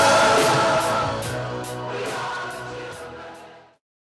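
Pop music with a sustained sung chord and drum-kit hits about two or three a second, fading out steadily to silence shortly before the end.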